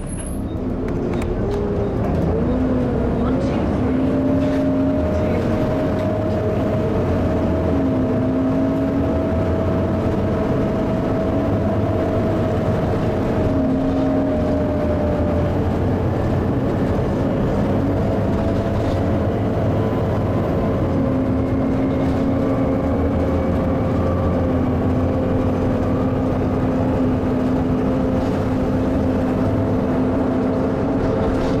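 Volvo B7TL double-decker bus's diesel engine and drivetrain heard from inside the bus, pulling steadily at road speed. Steady whining tones sit over the engine's rumble, and the sound builds over the first couple of seconds, then holds even.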